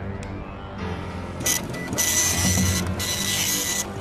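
Background music. From about a second and a half in, a loud printer-like rasp with a thin steady whine in it comes in three stretches with short breaks, as a strip of paper is drawn out from behind an ear.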